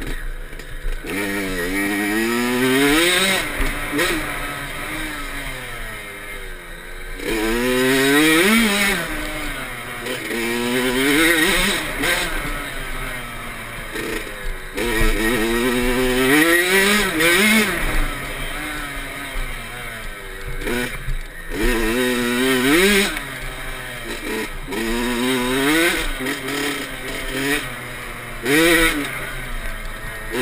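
Kawasaki KX65 two-stroke single-cylinder dirt bike engine revving hard under way. Its pitch climbs in a rising whine for a second or two, then drops and climbs again, every two or three seconds.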